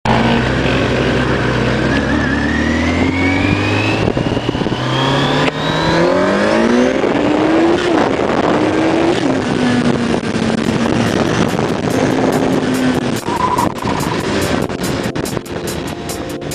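Motorcycle engine heard from the rider's seat: it idles, then revs up through the gears as the bike pulls away, with drops in pitch at the upshifts, and settles to a steady cruise with wind noise. In the last few seconds a music track with a steady beat fades in.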